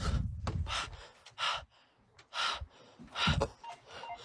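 A person breathing hard close to the microphone: several short, sharp breaths about a second apart. A low rumble of handling noise comes in the first half second.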